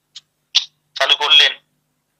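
Only speech: a man speaking a few words of Bengali, broken by fully silent gaps.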